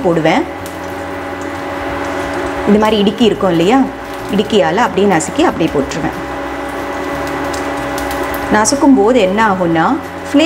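Ghee sizzling softly in a pan as garlic is squeezed into it through a metal garlic press, over a steady hum.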